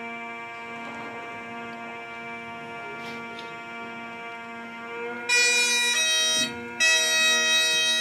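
Bagpipes: the drones hold a steady chord, then about five seconds in the chanter comes in loudly with a high melody, breaking off for a moment before carrying on.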